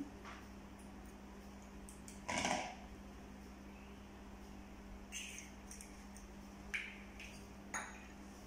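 An egg being broken open by hand over a plastic mixing bowl: one louder short crack of shell about two seconds in, then a few light clicks and taps of shell and bowl.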